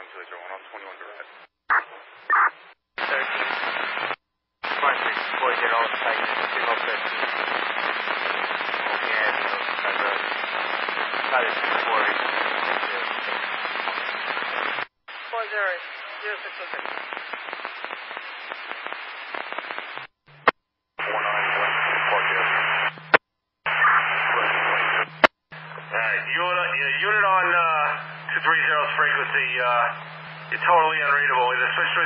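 Scanner audio of fire department two-way radio: a string of transmissions that cut in and out abruptly as units key up, much of it a hissy, garbled channel with faint voice in it. In the last third, clearer radio voice plays over a steady low hum.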